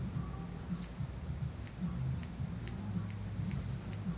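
Grooming scissors snipping a schnauzer's facial hair: a run of short, crisp snips, irregular at about three a second.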